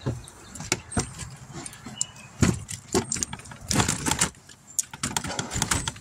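Someone trying a weathered wooden door: the latch rattling and the door knocking in its frame in an irregular run of clicks and knocks, the loudest about two and a half and four seconds in. The door won't open, and is thought to be locked from the inside.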